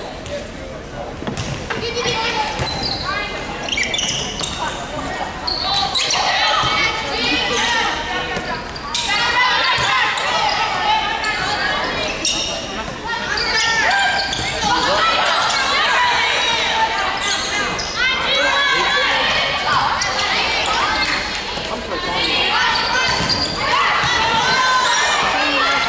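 Volleyball rally in a gymnasium: players and spectators calling out and cheering, with the ball being struck and bounding, echoing in the large hall.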